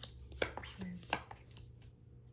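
Tarot cards being dealt and laid down on a cloth-covered table: three short, sharp card snaps and taps, the first right at the start and the others about half a second and a second later.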